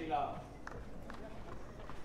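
A brief voice right at the start, then soft, short thuds about every half second or so on a clay tennis court, over steady outdoor background.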